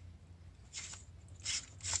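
A few soft, short scrapes and rustles as a screw-in LED corn lamp is twisted in its socket by hand.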